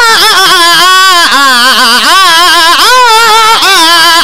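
A man's voice chanting a Punjabi qasida loudly into a microphone, sustained, with wavering, ornamented runs in pitch.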